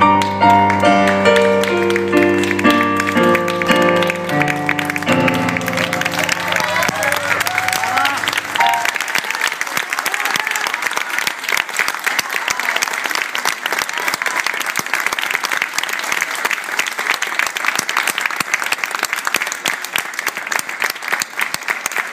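Final notes and chords of a song on a digital piano, ringing out over the first few seconds and fading. An audience applauds from about five seconds in, steadily to the end.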